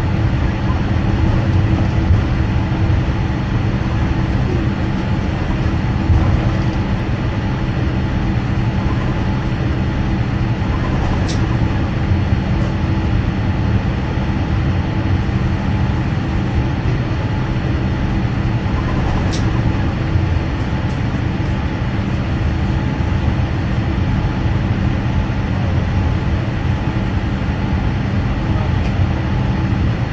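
Airliner cabin noise while taxiing slowly on the ground: a steady drone and rumble from the jet engines at idle and the aircraft rolling over the taxiway.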